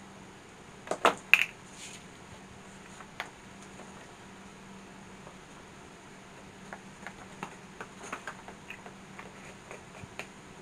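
Small embossed ghost cut-outs held in metal tweezers being tapped and shaken to knock off excess embossing powder: a quick cluster of sharp clicks about a second in, then lighter scattered ticks and taps in the second half as the pieces and the powder-catching paper are handled.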